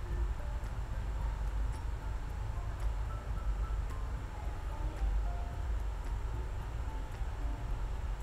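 Scissors cutting through sequin fabric, heard as a few faint snips over a steady low rumble.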